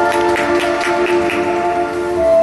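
Skating program music playing through the rink's speakers: held chords with a fast run of bright ticking accents that stops about a second and a half in.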